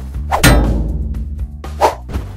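A single metallic clang about half a second in, ringing as it fades, over background music: a sound effect at a graphic transition.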